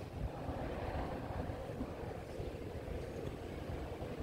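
Low, steady rumble of background noise in a large gymnasium hall, with no voice over the PA system.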